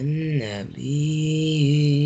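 A voice reciting a Quran verse in the chanted tajwid style. A short syllable falls in pitch, then a long vowel is held at a steady pitch, an elongated madd.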